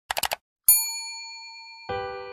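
Four quick clicks, then a single ding of a hotel desk bell that rings out and slowly fades. Just before the end a sustained musical chord comes in.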